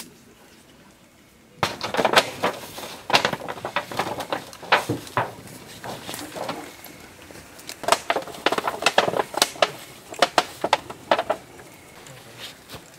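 Debris from a collapsed wooden cabin being shifted by hand: irregular clattering and knocks of wood and metal pieces, starting about a second and a half in and coming in clusters.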